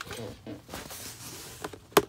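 Quiet handling noises as a boxed cabin air filter is picked up, with one sharp click near the end.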